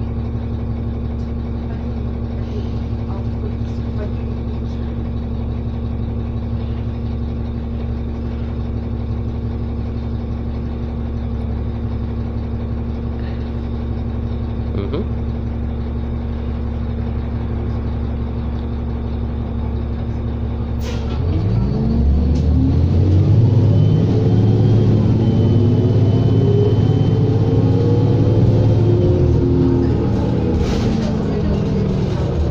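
A New Flyer D40LF diesel transit bus engine idling steadily, heard from inside the cabin. About two-thirds of the way through there is a sharp click, then the engine revs up and the pitch rises over several seconds as the bus pulls away.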